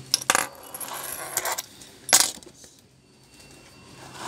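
Hard clicks and clatter from small hard objects being handled on a workbench: a sharp click just after the start, about a second of scraping rattle, then a louder sharp click about two seconds in.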